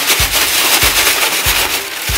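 Thin plastic crinkling and rustling from a hand rummaging in a black plastic bag and pulling out a snack packet.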